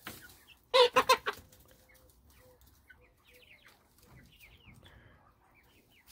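Chickens clucking: a quick run of three or four loud clucks about a second in, then faint, soft clucks and short high chirps from the flock.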